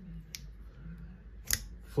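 CRKT Pilar frame-lock folding knife worked by hand: a faint click about a third of a second in, then a sharp metallic snap of the blade about a second and a half in.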